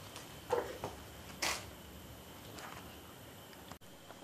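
Camera handling noise: a few faint knocks and rustles in the first second and a half as the camera is taken off its mount and held by hand.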